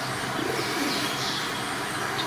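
Birds calling: repeated short, high, falling chirps, with a lower call around half a second in, over a steady background hum.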